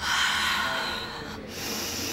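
A woman taking two deep, audible breaths, the first the louder. It is a deliberate breathe-in, breathe-out to calm herself down.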